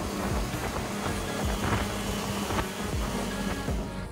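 Motorboat running fast under outboard power: a steady engine drone mixed with wind and rushing spray, with background music over it.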